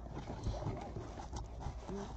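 Cardboard box being opened and handled: soft rustling of the flaps and packing, with a few light taps.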